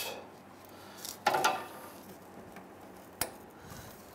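Small plastic and metal parts being handled at the fuel-line nipples of a fuel pump module: a brief clatter about a second in, then a single sharp click a little past three seconds.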